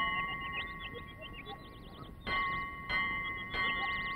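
A bell ringing with a steady held tone, struck again three times in the second half, each strike renewing the ring, with high warbling trills above it.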